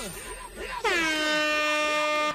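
DJ air-horn sound effect: one long blast, starting about a second in with a brief drop in pitch, then held steady. Before it, a run of short falling swoop effects sounds over the end of the dancehall mix.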